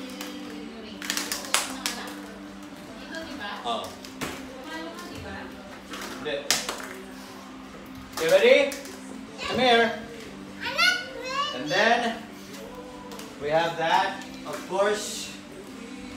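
Young children's voices calling out in play, mostly in the second half, with a few sharp knocks about a second in and again around six seconds, over a steady low hum.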